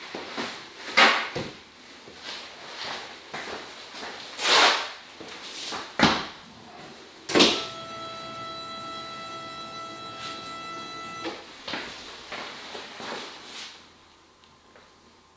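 Paper rustling and handling noises in a small room. About seven seconds in, after a sharp knock, comes a steady electric whine with many overtones that lasts about four seconds and then cuts off.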